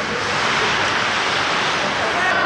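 Steady rushing hiss of ice hockey play heard in the arena: skate blades cutting the ice as players skate toward the net.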